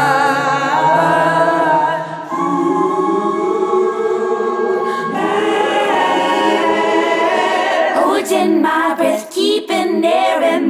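Layered vocal harmonies in a song, a choir-like stack of voices holding long chords. The chords change about two and five seconds in, then break into shorter, choppier phrases near the end.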